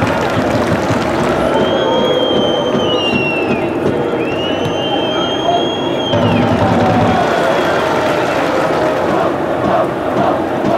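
Football stadium crowd noise from the stands during play: a steady din of voices and shouting, with two long whistled tones in the middle that each slide down at the end.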